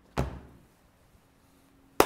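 A single thump about a quarter second in, dying away over half a second, then a sharp clap of the hands right at the end.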